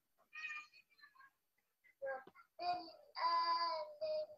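A child's voice reciting the verse in short, faint, broken-up snatches through a video call on an unstable internet connection, with gaps of silence where the audio drops out.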